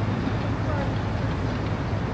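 City street ambience: a steady rumble of traffic with faint voices of passers-by, a few brief snatches of speech early on.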